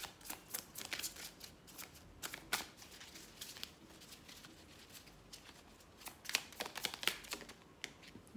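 A tarot deck being shuffled by hand: quick flurries of card clicks and slaps, busiest in the first few seconds, easing off in the middle, then picking up again near the end.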